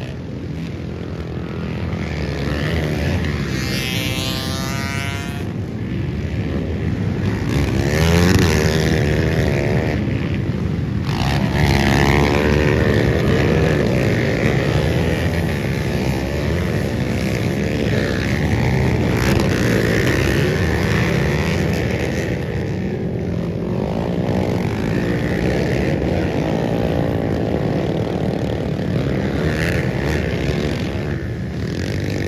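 Many dirt bike engines running at once, revved up and down so their pitches rise and fall over one another.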